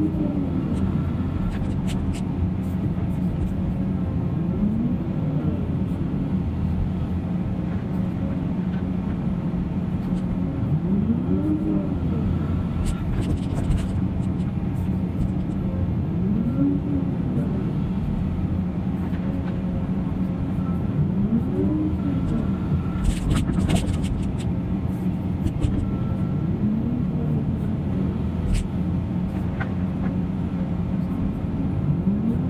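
Diesel engines of a Cat 336 excavator and a McCloskey screening plant running steadily, the excavator's engine note rising and falling in pitch about every five seconds as it works through its dig and swing cycles. A few short clatters of debris, loudest about three-quarters of the way through.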